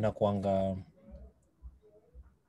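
A man's voice speaking for just under a second, then a pause with only faint low noise from the room.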